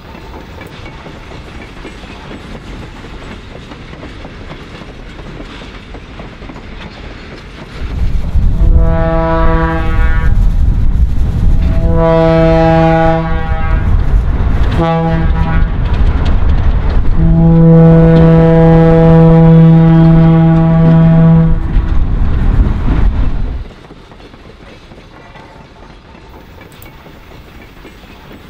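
Diesel locomotive horn blowing the grade-crossing signal, long, long, short, long, over the loud rumble of a passing freight train. The train sound comes in suddenly about eight seconds in after quieter steady noise, and cuts off abruptly a few seconds before the end.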